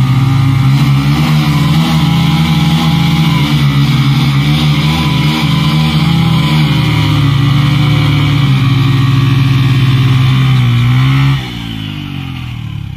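Two small single-cylinder commuter motorcycles held at high revs under heavy load as they pull against each other on a tow rope, their two engine notes beating against each other. The revs drop sharply about a second before the end.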